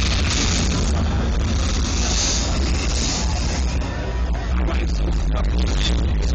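Live hip-hop music played loud through a festival PA, with a heavy, steady bass line.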